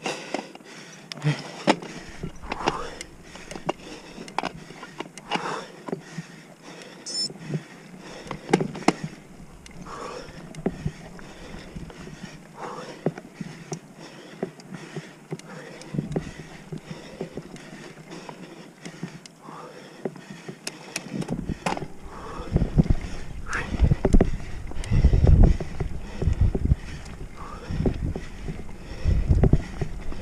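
Oggi Cattura Pro mountain bike ridden over a rough dirt singletrack: irregular rattling and knocks from the frame, chain and tyres over the ground. From about two-thirds in, deep rumbling bursts join and become the loudest sound.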